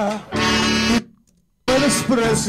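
Male lead vocal with band accompaniment, a sung romantic song playing back. It cuts off suddenly about a second in and starts again after half a second of silence.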